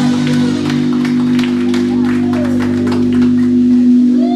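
A live band playing an instrumental stretch between vocal lines: a held chord over bass, with repeated drum and cymbal hits.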